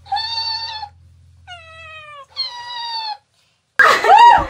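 Three drawn-out meows: a long steady one, a shorter one that falls in pitch, then another long steady one.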